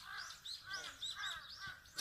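Birds calling faintly: a quick run of short arched calls, several a second, overlapping one another.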